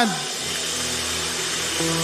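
A large hall audience applauding, a steady wash of clapping, while held music chords come in under it about half a second in and grow fuller near the end.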